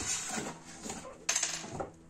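Cardboard box being opened by hand, the lid and flaps scraping and rustling, with a sharper scrape of cardboard about a second and a quarter in.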